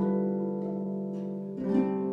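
Solo harp playing slowly: a low note and chord plucked at the start ring on and fade, then new notes are plucked in a short run near the end.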